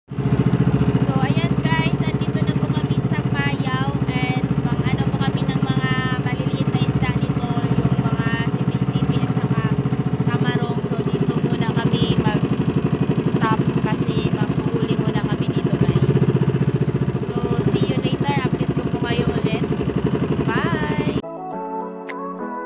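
Small single-engine outrigger boat's motor running steadily under way, a loud fast-pulsing engine note, with voices over it. It stops abruptly near the end as music takes over.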